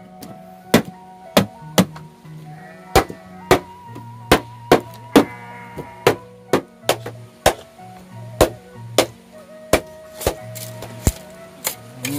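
A small axe chopping into a whole green culm of giant bamboo (gombong / awi surat): sharp, irregular strikes about one and a half a second. These are the cuts that let the culm be opened out flat into bamboo floor or wall sheeting (talupuh).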